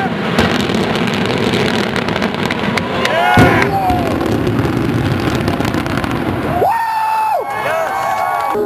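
Demolition charges going off on a steel highway bridge: a blast right at the start, then a sustained crackling rumble as the explosions follow one another and echo. Spectators shout over it about three seconds in and again near the end.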